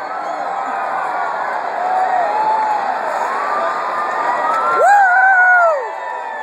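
Baseball stadium crowd cheering and yelling as the wave sweeps through their section, the noise building across the seats. Near the end one voice close by gives a loud shout about a second long, the loudest moment.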